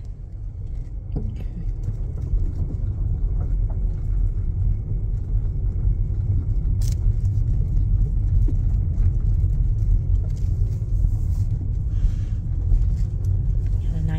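Low rumble of a car rolling slowly along a gravel driveway, heard from inside the cabin. It swells over the first couple of seconds and then stays steady.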